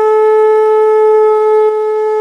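A conch shell (shankh) blown in one long, loud, steady note as a devotional song's opening.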